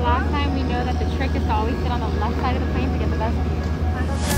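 Steady low drone of a turboprop airliner running on the apron, with people talking nearby over it.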